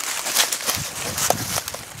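Rustling and crackling of brush and dry grass underfoot as someone moves along a creek bank, a run of irregular small crunches with one sharp click a little past halfway.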